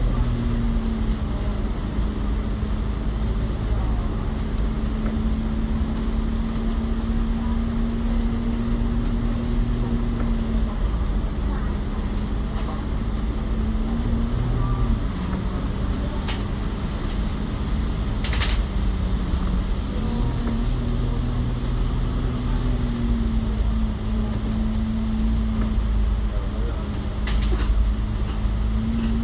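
Inside an ADL Enviro500 MMC double-decker bus on the move: its Cummins L9 Euro 6 diesel and ZF Ecolife automatic gearbox run under a steady drone over road rumble. The drone's pitch dips about halfway through and climbs again later as road speed changes, with a few light rattles from the cabin.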